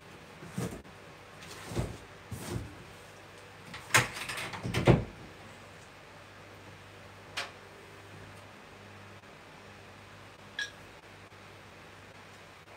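A metal spoon scraping and knocking against a glass jug as a crumb mixture is scooped out: a cluster of knocks over the first five seconds, the loudest about four to five seconds in, then two single clicks later.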